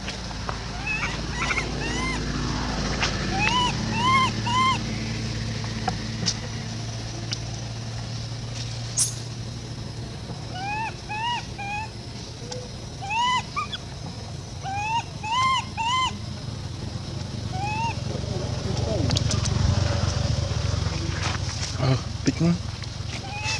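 Baby long-tailed macaque giving short high squeaky calls, each rising and falling in pitch, in quick runs of two or three, repeated several times.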